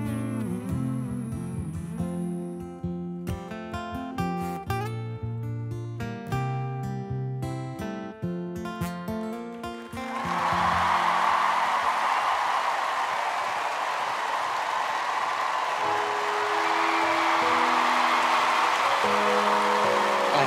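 Music of short plucked notes, each starting sharply and dying away, for about the first half. Then a large audience breaks into loud applause and cheering that holds to the end, with a few quiet held notes beneath it.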